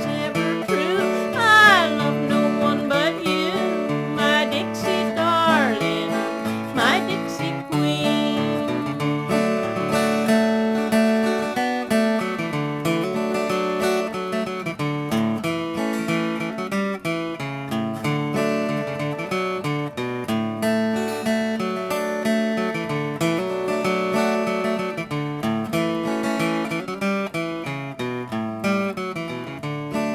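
Steel-string acoustic guitar played in old-time country style, with a woman singing over it for roughly the first seven seconds. After that the guitar carries on alone in an instrumental break, picking a melody over bass notes.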